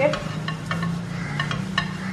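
An oiled tissue being wiped around the inside of a non-stick frying pan: a string of short rubbing and scraping sounds over a steady low hum.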